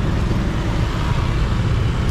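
Road traffic at a busy city intersection: cars passing close by, a steady low rumble of engines and tyres.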